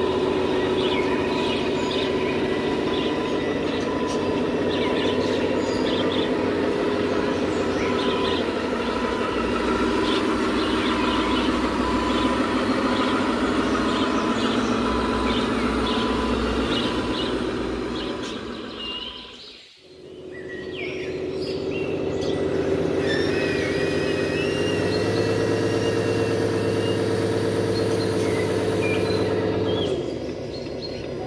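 Radio-controlled FAW model dump truck running: a steady electric motor and gear hum with a whine, with small birds chirping. The sound fades almost to nothing for a moment about two-thirds of the way through, then comes back with a slightly higher, stronger hum.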